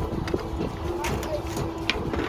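Outdoor rumble with faint, indistinct voices, and a couple of sharp clicks near the end.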